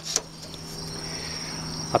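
A steady high-pitched insect trill over a low steady hum, with a couple of small clicks just after the start.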